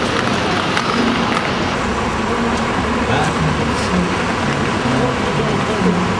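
City street traffic noise, with buses and cars going by and indistinct voices of people nearby talking.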